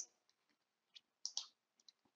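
Near silence in a pause between spoken sentences, broken by a few faint short clicks about a second in.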